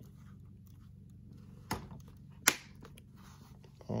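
Two sharp plastic snaps, a little under a second apart, as the bottom case's edge clips are pressed into place on an MSI gaming laptop; the second snap is the louder.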